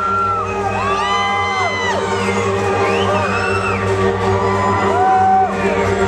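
Live band music: a sustained drone of held notes from the stage, with audience members whooping and cheering over it in short rising-and-falling calls.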